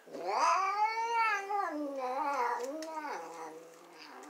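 A domestic cat giving one long, drawn-out yowl that rises in pitch, then falls and wavers before fading out near the end.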